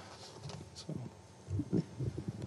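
Quiet pause in a room, with faint low rustling and soft bumps from people shifting and handling things. A somewhat louder low bump comes about one and a half seconds in.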